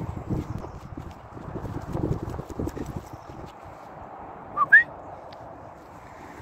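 Irregular dull thumps of footsteps on grass, with wind buffeting the microphone. About four and a half seconds in comes a short, high, rising squeak in two parts.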